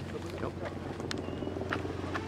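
A boat engine running steadily with a low, even hum. A few sharp clicks sound over it.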